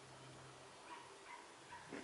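Near silence, with a dog whimpering faintly: three short high whines starting about a second in.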